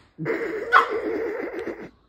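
A person's high, quavering laugh that sounds like a horse's whinny. It starts suddenly and cuts off sharply just before the end.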